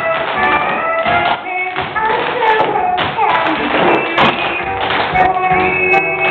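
Tap shoes of a line of dancers striking the stage floor in quick, frequent taps over loud musical accompaniment.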